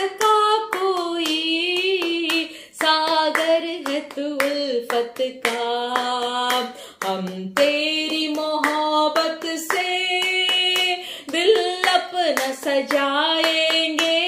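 A woman singing a devotional song and clapping her hands in a steady rhythm.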